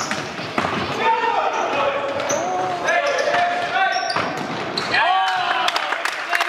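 Futsal players shouting short calls in a sports hall, with the knocks of the ball being kicked and bounced on the hall floor during play.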